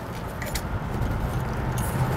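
Steady low rumble of an idling truck engine, with a couple of faint small clicks as the tire valve stem and pressure gauge are handled.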